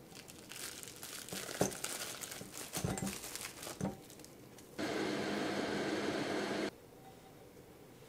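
Cubes of butter dropped and shuffled into a glass bowl of chocolate pieces: rustling with a few sharp clicks over about four seconds. Then a steady microwave hum for about two seconds, starting and stopping abruptly, as it melts the chocolate and butter.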